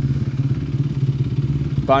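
Four-stroke Star Racing Yamaha motocross bikes idling as they warm up, a steady low engine drone.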